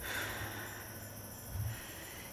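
Night insects trilling steadily. A person breathes out once at the start, and there is a soft low bump near the end.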